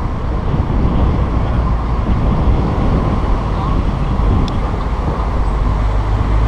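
A car driving along a road: a steady low rumble of engine and tyre noise.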